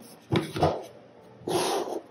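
Rigid cardboard album box and its lid being handled on a table: a light double knock about half a second in, then a short scraping rush near the end.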